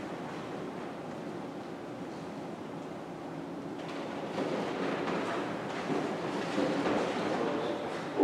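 Steady background room noise in a large lecture hall, with no clear speech, getting a little louder and busier about four seconds in.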